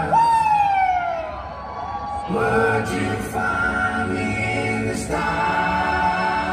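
Live rock band mid-song. It opens with a loud falling swoop of a pitched tone while the band thins out, then comes back in with full held chords and bass about two seconds in.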